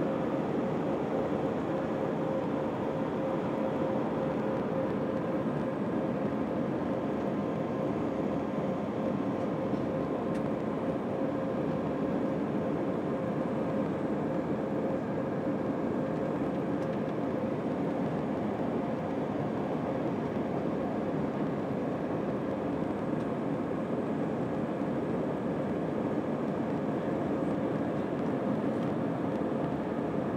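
Cabin noise inside an Airbus A320 climbing out after takeoff, heard from a window seat over the wing: the steady rush of its IAE V2500 turbofan engines and of the airflow past the fuselage, with a steady hum running through it.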